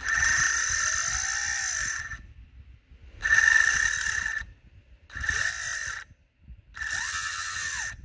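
Twin brushless motors of an RC submarine drive run up by their electronic speed controllers in four short bursts, each a steady high whine whose pitch rises and then falls as the throttle is pushed and eased back. The motors spin in opposite directions and run smoothly.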